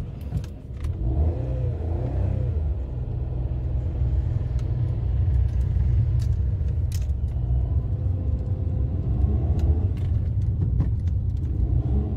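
Maruti Alto 800's three-cylinder petrol engine and road noise heard from inside the cabin while cruising: a steady low rumble with occasional light clicks and rattles.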